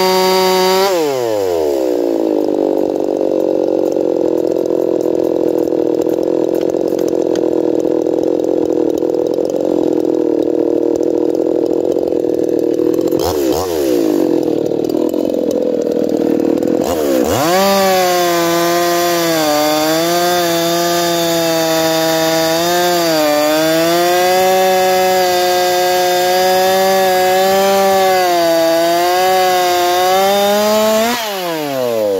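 Ported Echo CS-4910 50 cc two-stroke chainsaw cross-cutting hard red oak. About a second in the engine note drops as the chain takes the load, and it pulls steadily through the wood. Near 17 seconds the saw comes free and the revs jump up, running high with a wavering pitch.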